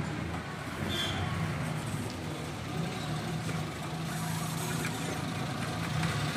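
A motor vehicle engine running steadily nearby, a low hum that settles in about a second in, over a general mechanical din.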